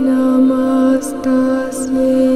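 Devotional mantra chant sung on long held notes, with a short break and hissing 's' consonants a little after a second in and again near the end.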